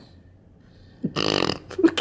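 A woman's short laugh: one rough, breathy burst about a second in, followed by a few small clicks.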